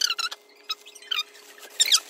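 Clear plastic bread bag crinkling in short bursts as it is handled and opened, with a faint steady hum underneath.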